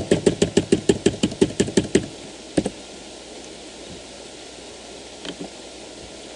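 A computer keyboard key tapped rapidly and repeatedly, about eight presses a second for two seconds, then a single further press.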